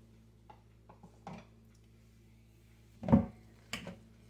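A wire potato masher is pushed into boiled potatoes in a stainless steel pot, giving a soft thud with a metallic clink about three seconds in and a shorter one just before the end. A few faint ticks come before them.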